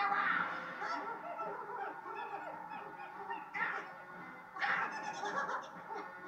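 High-pitched, wavering cartoon vocal sounds, bleat-like and wordless, heard through a television's speaker. Fresh cries come in about three and a half and four and a half seconds in.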